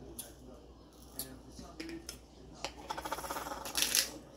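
Handheld black pepper grinder: a few scattered clicks at first, then, from a little past the middle, a fast run of ratcheting clicks that gets louder as it is twisted to grind pepper.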